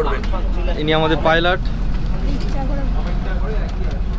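Steady low drone of a river launch's six-cylinder engine running under way, with a man's voice briefly about a second in.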